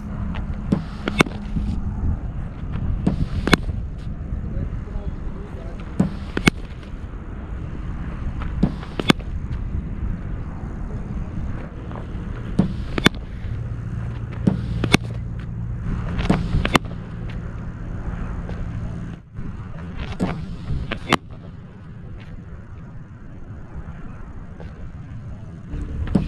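Cricket net practice against a bowling machine: about nine sharp knocks of the ball striking the bat and pitch, a few seconds apart, over a steady low rumble.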